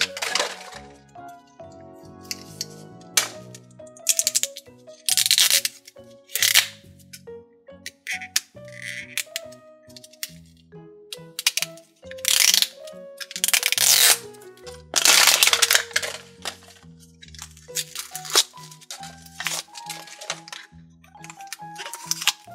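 Light background music with notes stepping up and down. Over it come repeated short, loud crackles and rips as the plastic wrap and paper layers of an LOL Surprise Confetti Pop ball are peeled and torn off.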